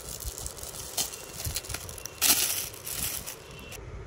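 Clear plastic wrapping crinkling and rustling as a shawl is handled and taken out of its cover, with a louder crackle a little past two seconds in.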